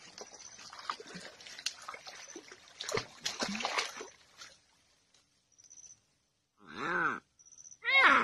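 Dry leaves and twigs rustling and crackling close to the microphone for the first few seconds, then near silence, then one short call with a rising-then-falling pitch about a second before the end.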